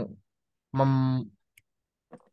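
Speech: a man's voice drawing out a single syllable, followed by a single faint click about one and a half seconds in.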